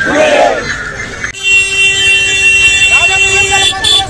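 A single steady horn blast, one unwavering pitched tone with strong overtones, starting about a second and a half in and held for about two and a half seconds, after a moment of voices.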